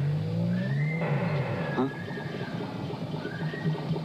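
Film soundtrack: a low, wavering drone with thin high tones gliding up and falling away over it, and no speech.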